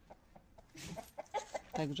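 Short animal calls, like a hen's clucking, repeated about four times a second from about a second in, with a brief rustle just before them.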